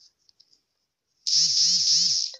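Faint taps, then about a second in a loud alert tone from a phone's anti-spy app, rising and falling about four times a second: the warning that the camera has just been opened.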